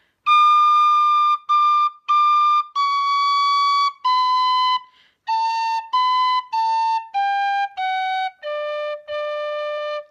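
Tin whistle in D playing a phrase of a reel slowly, one separated note at a time: three high Ds, C sharp, B, A, B, A, G, F sharp, then two low Ds, falling in pitch to the bottom of the whistle.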